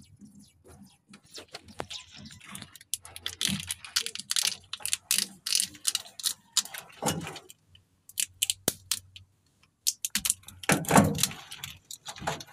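Corrugated plastic wire conduit and loose wires being handled during motorcycle wiring: an irregular run of crackling clicks and rustles, with a louder burst near the end.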